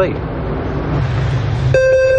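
Bleep-test beep from the multi-stage fitness test's audio player: a steady electronic tone that starts about three-quarters of the way in, over a background rumble.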